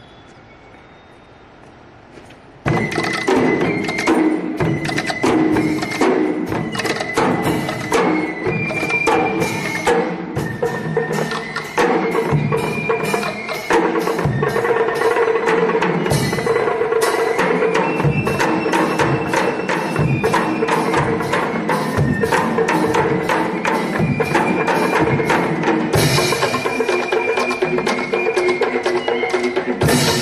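An eastern-style cadet band of drums and large hand cymbals strikes up about three seconds in and plays a fast, dense rhythm. A high melody line that steps in pitch runs over it.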